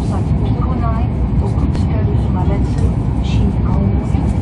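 Steady low rumble of a Hokkaido Shinkansen train running at speed, heard from inside the passenger car, with voices talking faintly underneath.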